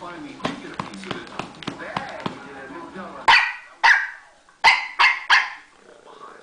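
Bichon Frise play-barking: five loud, sharp barks in quick succession, starting about halfway through. Before the barks, voices from a background broadcast with a few small clicks.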